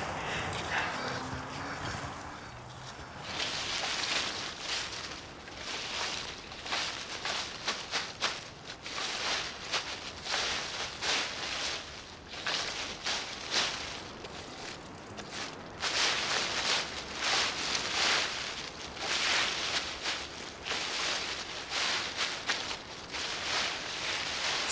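Dry chestnut leaves and spiny burrs being swept across the ground in repeated rustling strokes, about one or two a second. The strokes start about three seconds in.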